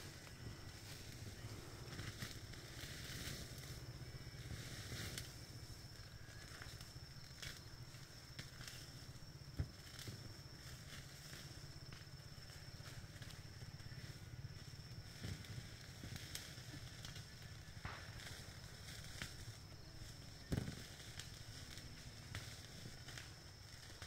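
Faint outdoor background: a low steady rumble and a thin, steady high tone, broken by scattered soft clicks and crackles, with a sharper click about ten seconds in and another about twenty seconds in.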